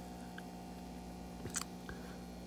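Faint steady electrical hum with a light click about one and a half seconds in.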